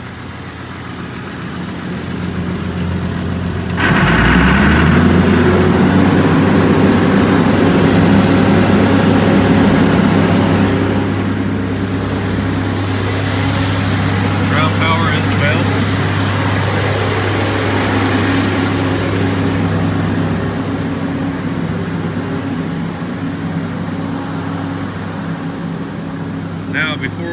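Diesel engine of an aircraft ground power cart starting about four seconds in, revving up, then running steadily.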